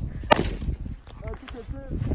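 A single sharp firework crack about a third of a second in, followed by two fainter pops about a second later.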